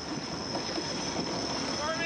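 Steady rush of wind and water from racing yachts sailing hard in a strong breeze, with a faint, high, steady whine running over it.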